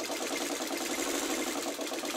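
Electric sewing machine running steadily at an even, rapid stitch rate, sewing a seam through patchwork quilt pieces.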